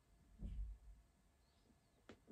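A man drinking beer from a pint glass: one soft, low gulp about half a second in. Otherwise near quiet.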